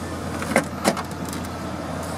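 Rear tailgate latch of a BMW X5 releasing as the roundel emblem is pressed, giving two short sharp clicks about a third of a second apart as the upper hatch comes free. A steady low hum runs underneath.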